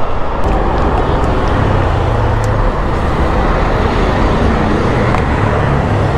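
Loud riding noise on a moving Yamaha motor scooter in city traffic: a steady, even rush of wind and road noise with the scooter's engine humming low underneath.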